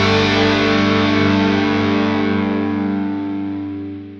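Heavy metal song ending on a held distorted electric guitar chord that rings on steadily and begins to fade out in the last second.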